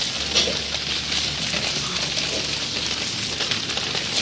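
Steady hiss of water overflowing from a rooftop water tank and spattering down the wall, with a fine crackle of drops: the tank is being overfilled and the water is going to waste.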